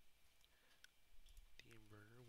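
A few faint, separate computer mouse clicks over near silence, then a brief hum of a man's voice near the end.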